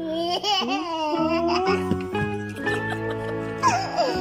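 A toddler laughing, mostly in the first second and a half and briefly again near the end, over background music with long held notes.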